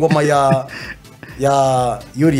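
A man's voice holding two long, steady-pitched vocal sounds, the second starting just over a second in.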